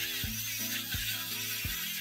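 Background music with a steady beat, over the steady high whine of an 18V 165 mm Makita cordless circular saw cutting through a floor panel with a dulled blade, the saw straining under load. The saw sound cuts off abruptly at the very end.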